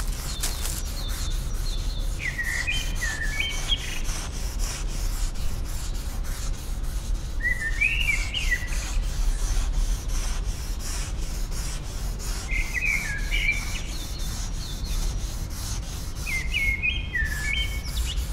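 A songbird sings a short phrase of several quick notes about every five seconds. Underneath runs a steady, fast scratching or rubbing sound, about five strokes a second.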